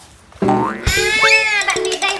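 Comic cartoon-style sound effect: a rising whistle-like glide, then a springy boing whose pitch bends up and falls back, over light background music with short repeated notes.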